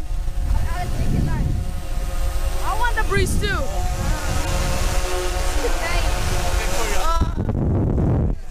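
Children's voices talking and calling out close to the camera, over wind rumbling on the microphone, with a steady hum underneath in the middle of the stretch.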